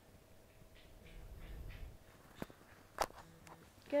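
Quiet room with faint scattered noise, then two short sharp clicks about two and a half and three seconds in, the second one louder.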